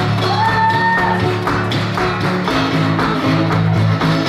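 Solo blues on a metal-bodied resonator guitar, a steady picked bass rhythm under plucked treble notes. Near the start a high note slides up and is held for about a second.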